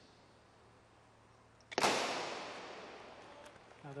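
A starting gun fires once, about two seconds in, for the start of a 400 m race: a single sharp crack whose echo rings around the stadium and dies away over about a second and a half.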